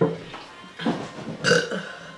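A teenage boy burping loudly three times, the last about one and a half seconds in the loudest.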